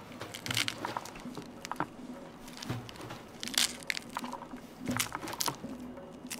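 Scored pomegranate rind cracking and tearing as it is pried apart by hand into its chambers: irregular crackling with a few louder cracks, the clearest about three and a half and five seconds in.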